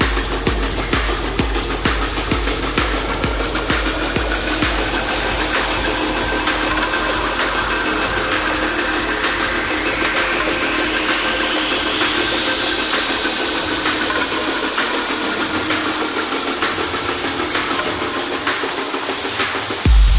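Techno track in a breakdown: the kick drum fades out while steady synth tones and ticking hi-hats carry on. A long rising sweep climbs through the second half, building up until the full beat drops back in at the very end.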